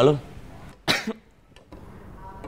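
A single short cough, about a second in.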